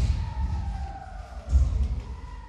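Dull low thuds and rumble from judoka grappling in groundwork on tatami mats, with two heavier surges, one at the start and one about one and a half seconds in. A faint tone glides slowly downward between them.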